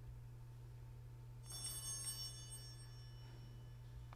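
A small bell is struck about a second and a half in. Its bright, high ringing of several tones dies away over about two seconds, over a low steady hum.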